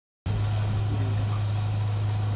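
Steady low electrical hum with hiss from a public-address system, cutting in suddenly out of silence just after the start and holding level.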